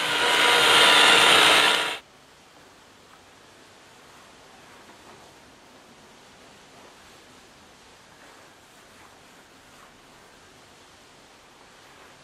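Rotary paint polisher with a foam pad running against motorcycle fairing paint, buffing off the edge of a paint repair. It cuts off abruptly about two seconds in, leaving only faint background noise.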